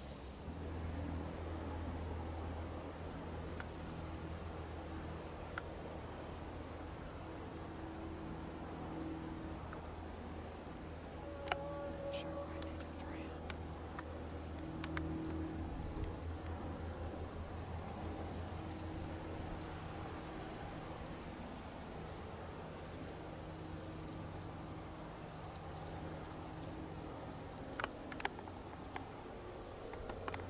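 Steady, high-pitched chorus of insects, with a low rumble underneath and a few faint clicks.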